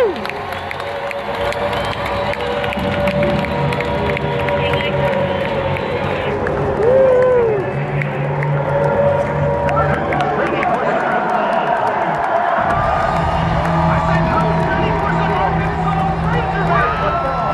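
Stadium crowd cheering and shouting over a marching band holding long sustained notes, with single fans whooping nearby.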